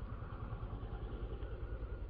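Low, steady mechanical hum with a rapid, even pulse, like an engine or motor running.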